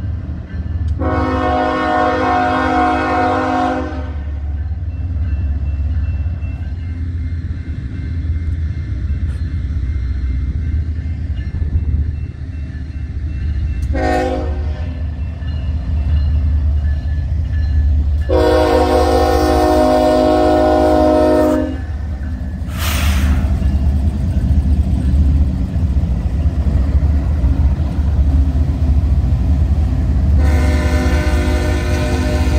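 A Union Pacific freight train's lead diesel locomotive sounds its multi-note air horn: a long blast about a second in, a short blast about 14 seconds in, and another long blast about 18 seconds in. Under the horn the diesel engines rumble steadily, growing louder near the end as the locomotives pass close by.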